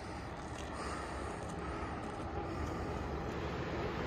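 Steady outdoor background noise, a low even rumble with no distinct events.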